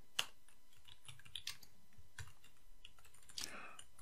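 Typing on a computer keyboard: a faint, irregular run of key clicks.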